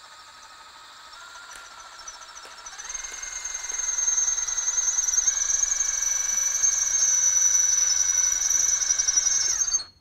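Power drill with a Norseman CTD bit drilling out a structural pop rivet. The motor whine steps up in pitch over the first few seconds, then turns into a loud, high squeal as the bit bites into the rivet head. The squeal stops suddenly just before the end.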